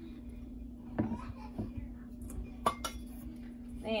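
Metal kitchen utensils handled against a glass baking dish and a bowl: a soft scrape about a second in, then two sharp clinks in quick succession near three seconds, over a steady low hum.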